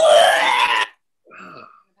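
A woman voicing a loud, exaggerated retching noise for under a second, a mock vomiting sound, followed by a brief quieter vocal sound.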